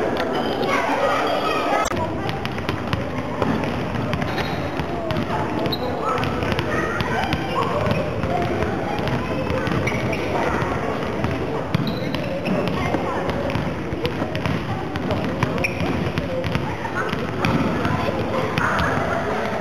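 Indoor sports hall full of children's voices chattering and calling, with frequent sharp slaps and bounces of volleyballs being hit and landing on the floor.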